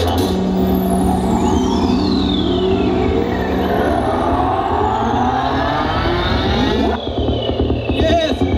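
Electronic psytrance music with the beat dropped out: long synthesizer pitch sweeps, one falling from very high over about five seconds and others rising across the middle, over a held low bass drone. The upper sounds thin out about a second before the end.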